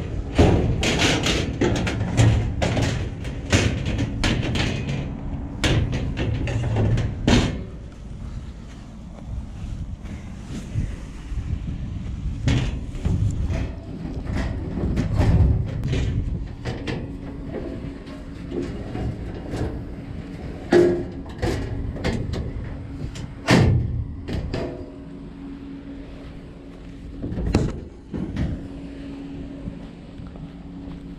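Clanks and thumps of a heavy steel filing cabinet being shoved, rocked and tugged at by hand, its drawers stuck and not coming out. A dense run of metal knocks in the first several seconds gives way to scattered single thuds.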